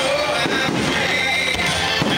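Aerial fireworks shells bursting, with a couple of booms about half a second in and again near the end, over music that plays throughout.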